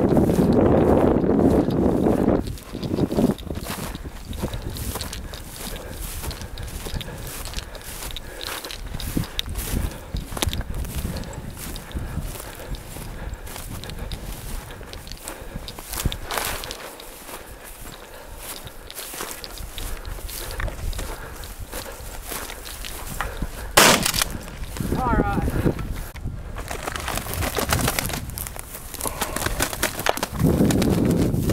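Footsteps crunching and brush swishing as someone walks through dry sagebrush. One single sharp, loud crack comes about 24 seconds in.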